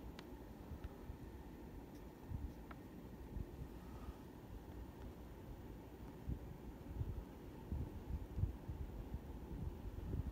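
Faint, uneven low rumble of background noise with a few light clicks; no speech.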